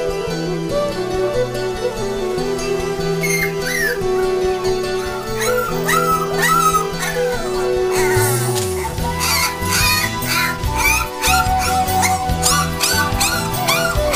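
Background music playing, with three-week-old Labrador puppies whimpering and squealing over it. Their short, high whines come more and more often from about halfway through.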